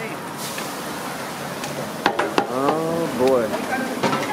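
Tortillas and cheese sizzling on a flat-top griddle, a steady hiss. About two seconds in come two sharp clicks, followed by a short stretch of voice.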